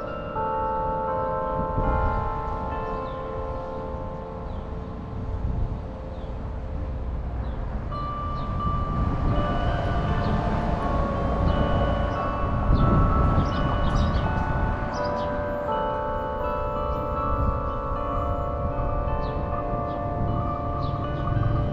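Tower bells of Pella's Klokkenspel playing a tune, with held, overlapping notes, over a low rumble.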